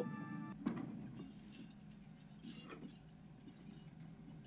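Faint film soundtrack: sparse light clinks and ticks over a low steady hum, with one sharper click about half a second in.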